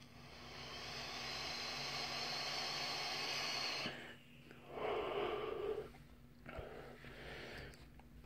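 A long drag on an electronic cigarette: a steady airy hiss that builds for about four seconds and stops, then the vapour blown out in two shorter breaths.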